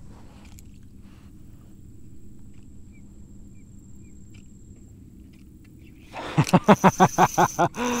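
Faint, steady low background noise for about six seconds, then a man laughs: a quick run of loud laughs lasting about a second and a half.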